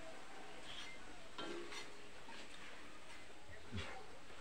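Banana slices frying in hot oil in a wok: a faint, steady sizzle, with a few light clicks of the metal strainer spoon.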